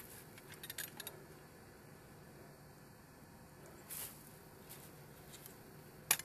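Faint handling noise: a few short clicks and rustles, a cluster a little under a second in and another about four seconds in, over a quiet outdoor background.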